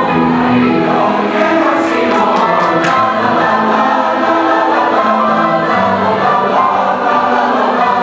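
Large choir of high-school voices singing a Venezuelan song in Latin dance rhythm, many parts holding and moving through chords together.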